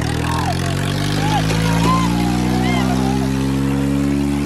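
Swaraj 855 tractor's three-cylinder diesel engine revving up under heavy load in a tug-of-war pull, its pitch climbing over the first couple of seconds and then held at high revs. People in the crowd shout over it.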